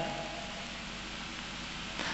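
Steady background hiss and room noise in a pause between spoken phrases, with no distinct event.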